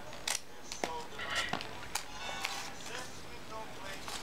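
Scissors snipping through several layers of folded printer paper: a series of short, separate snips as a slit is cut into the folded triangle.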